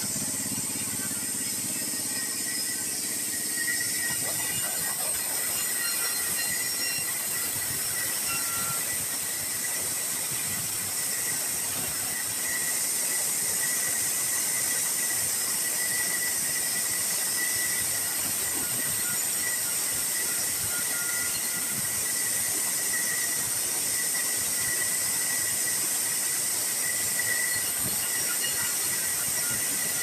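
Bandsaw mill running and sawing sengon timber into boards: a steady high hiss with a constant whine from the blade. It gets a little louder about four seconds in and again about twelve seconds in.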